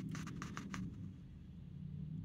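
A quick run of light clicks and scrapes from a coin or fingers on a scratch-off lottery ticket, about seven in the first second, then fading, over a low steady hum.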